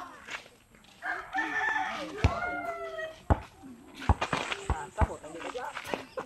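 A rooster crowing once, a long call of about two seconds that falls in pitch at the end. It is followed by several sharp knocks.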